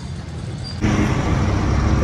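Roadside vehicle noise: a low engine and traffic rumble, quieter at first, then louder and steadier from just under a second in.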